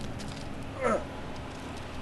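A single short animal call, falling sharply in pitch, about a second in.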